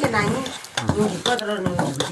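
A metal spoon stirring a thick mixture in a hot metal pot, clicking against the pot several times, with sizzling as water goes into the hot pot. A voice speaks over it.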